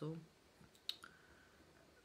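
Two quick sharp clicks close together about a second in, in an otherwise quiet pause after a spoken word.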